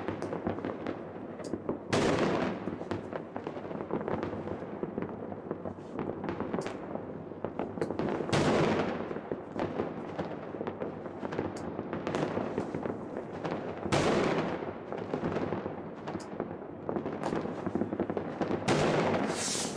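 New Year's Eve fireworks and firecrackers going off all around: a continuous crackle of many distant bangs, with three louder bursts about two, eight and fourteen seconds in.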